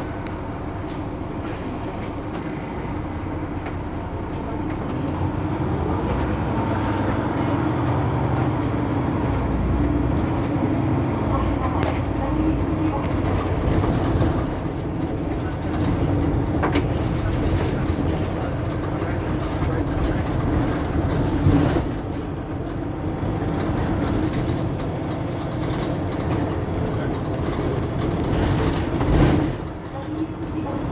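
Mercedes-Benz Citaro C2 Hybrid Euro 6 city bus running: a steady diesel drone with a low hum that grows louder a few seconds in, then swells and eases through the stretch.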